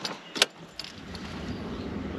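A sharp click about half a second in, then the low rumble of the Toyota Land Cruiser's engine building slowly.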